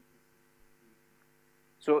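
A faint, steady electrical hum of several low tones under quiet room tone, then a man's voice starting near the end.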